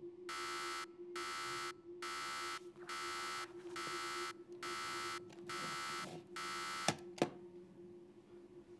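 Clock-radio alarm buzzing in eight evenly spaced pulses, about one a second. Near the end two sharp knocks, a hand slapping the clock, and the buzzing stops.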